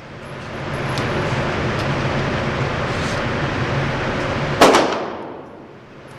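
Steady rushing background noise, then about three-quarters of the way in a single loud gunshot that echoes off the walls of an indoor range.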